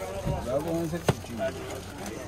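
People talking, and a single sharp knock about a second in as a machete blade cuts through a red onion onto a plastic cutting board.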